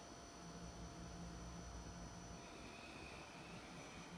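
Quiet room tone with a faint steady low hum; a faint high whine joins past the middle.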